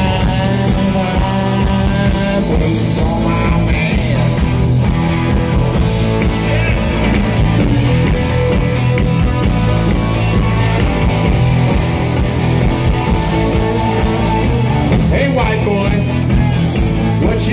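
Live rock band playing at full volume: electric guitar, electric bass and drums in a steady, driving rock groove.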